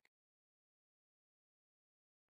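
Silence with no room tone at all: the soundtrack is muted.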